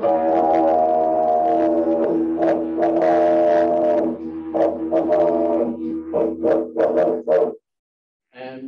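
Bloodwood didgeridoo played with a steady drone for about four seconds, then broken into rhythmic pulses with sharp accents. It stops abruptly near the end.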